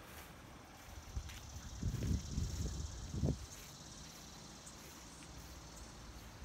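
Faint, steady chirring of insects, with a few low thumps about two and three seconds in.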